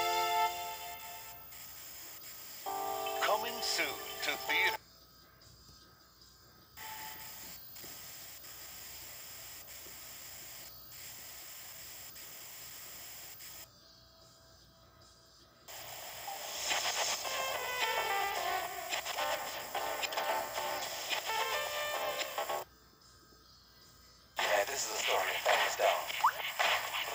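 Music and soundtrack from a VHS tape's opening segments, broken three times by a second or two of near silence as one segment ends and the next begins.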